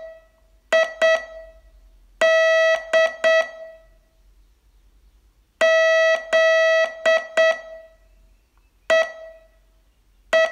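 Morse code sent as a steady, buzzy beep of one pitch, keyed in short dits and longer dahs: a short pair of elements about a second in, a group starting with a long dah around two seconds in, a longer group from the middle onward, and a single short element near the end, with silent gaps between characters.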